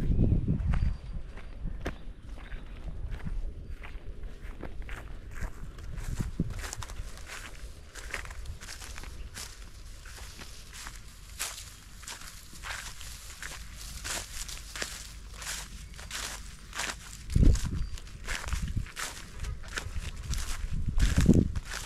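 Footsteps crunching through dry, cut crop stubble and straw in a harvested field, at a steady walking pace. A few low thuds come through as well, the loudest one near the end.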